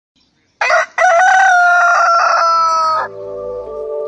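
A rooster crowing: a short opening note, then a long held note that sags slightly in pitch and cuts off about three seconds in. Soft, steady musical tones take over near the end.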